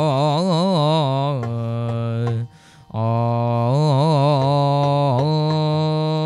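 A male singer in Yakshagana bhagavatike style singing a Ganapati invocation without accompaniment, with wavering ornamented notes and long held notes. He pauses briefly for breath about two and a half seconds in, then resumes.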